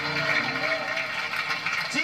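Audience applauding and cheering, with voices calling out in the crowd.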